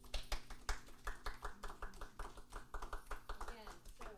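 A few people clapping in a small room, in sharp claps about five a second.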